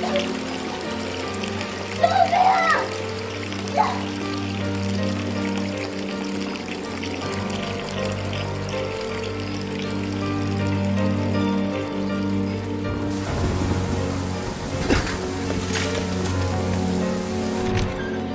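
Sustained, dramatic film score over water pouring into a tank, with a woman's anguished cries about two seconds in and again near four seconds. From about thirteen seconds, a steady hiss of heavy rain joins the music.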